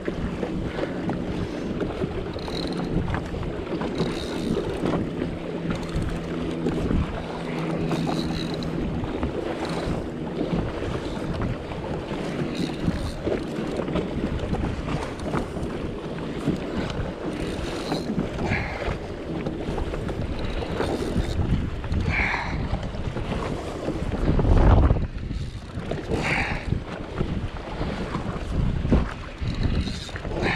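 Wind buffeting the microphone and choppy water slapping against a Sea-Doo Fish Pro's hull, with a steady low hum for the first ten seconds or so that then drops away. A loud, low gust about 25 seconds in.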